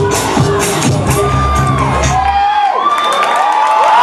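Dance music with a heavy beat playing over a club sound system, cutting off about two and a half seconds in; the crowd then cheers, screams and whoops as the performance ends.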